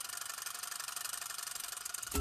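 Edited transition sound effect under a title card: a steady, fairly faint high hiss with a fine rattling texture.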